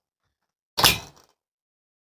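One short click-like knock from a Dometic full-length caravan fridge door as it is swung open on its two-way hinge, about a second in.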